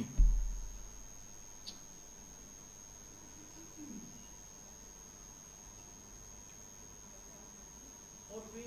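A low, dull thump on the preacher's gooseneck microphone just after the start, dying away over about a second. It is followed by quiet room tone with a faint steady high-pitched electronic whine and one small click.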